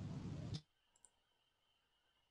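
Steady background hiss on the call audio that cuts off abruptly about half a second in, leaving near silence, with one faint click about a second in.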